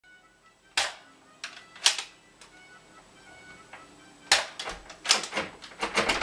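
Sharp plastic clicks from a toy gun being worked and fired: single clicks spaced about half a second to a second apart, then a quicker run of clicks in the last two seconds. Faint music sits under them.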